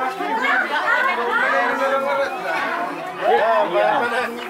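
Many people talking at once: overlapping chatter of a group of adults.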